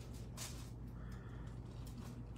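Quiet room tone with a steady low hum, and one brief rustle about half a second in.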